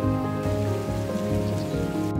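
Soft background music with sustained notes, over a steady hiss of falling water from a garden fountain's spray. The water hiss cuts off right at the end.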